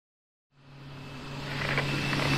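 A low steady hum with a hiss over it, fading in about half a second in and growing louder.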